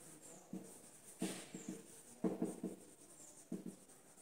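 Marker pen squeaking on a whiteboard in a run of short strokes as a word is written.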